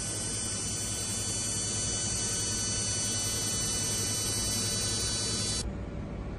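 An excimer laser firing during LASIK treatment, a steady high buzz that cuts off suddenly near the end.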